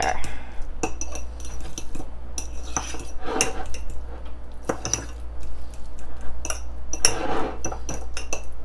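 Metal fork stirring mashed avocado in a ceramic bowl, with irregular scrapes and clinks as the fork hits the bowl.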